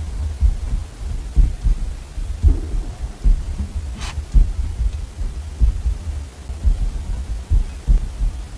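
Pen writing on a small paper card on a desk, close-miked: an uneven run of soft low knocks from the pen strokes, with one sharp click about four seconds in.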